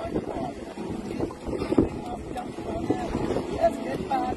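Wind and water rushing past a sailing yacht under way, with wind buffeting the microphone and indistinct voices.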